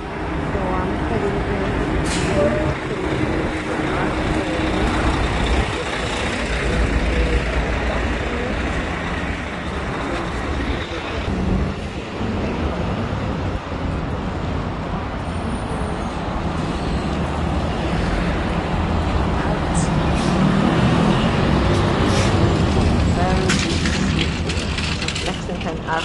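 City street traffic: cars and a bus running close by, a steady low rumble with a few short sharp clicks.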